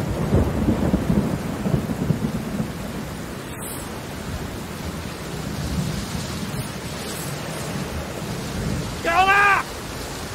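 Storm at sea in a film soundtrack: steady rain and wind noise over a low rumble. A voice briefly cuts in near the end.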